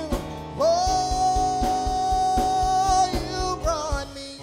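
Live church gospel music: a singer holds one long high note, ending it with a short run of notes, over keyboard and a steady drumbeat.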